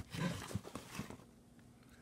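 Paper-wrapped rolls of quarters clicking and shuffling as they are handled and set back in a cardboard box, with a short low voice sound about a quarter second in; quiet for the last second.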